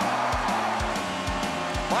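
Background music with a steady beat of about two thumps a second and sustained chords, over a fading arena crowd cheer after a goal.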